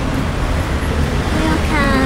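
Steady street traffic noise, a low rumble of passing cars. Near the end a falling pitched sound cuts across it.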